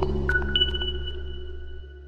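Electronic intro jingle for a logo sting, ending: a low synth drone fading out, with two high ringing tones coming in about a third and half a second in and holding until the music cuts off.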